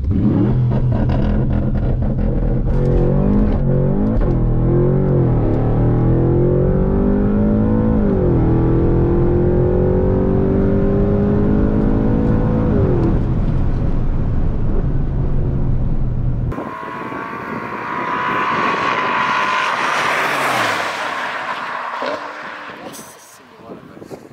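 Porsche Panamera Turbo S E-Hybrid's twin-turbo V8, tuned to about 850 hp, pulling hard at full throttle from a standing start, heard inside the cabin. Its pitch climbs and drops back through several quick upshifts in the first five seconds, then through longer gears at about eight and thirteen seconds in. After a cut, the car is heard from the side of the strip running hard in the distance, its noise swelling and then fading by near the end, with wind on the microphone.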